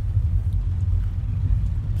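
Car engine idling, heard inside the cabin as a steady low rumble.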